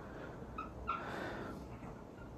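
Dry-erase marker squeaking on a whiteboard as a word is written: a couple of short squeaks about half a second in, then a longer one lasting about half a second.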